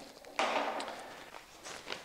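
Plastic hardware bag crinkling as its parts are emptied onto a table. It starts suddenly about half a second in and fades, with a few light clicks near the end.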